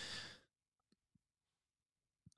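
A man's breathy sigh close to the microphone, about half a second long at the start, then near silence with a few faint ticks.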